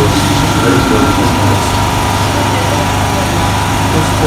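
Petrol generator running steadily close by, its engine drone loud and unbroken, with indistinct voices beneath it.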